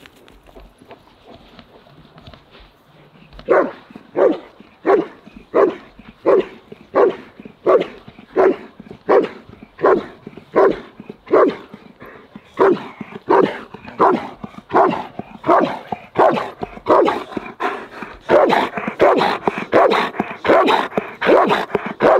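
German Shepherd Dog giving a steady bark-and-hold at a helper in the blind: the repeated barking signals that the dog has found the helper and is holding him there. The barks start about three and a half seconds in, about two a second, and come quicker and closer together near the end.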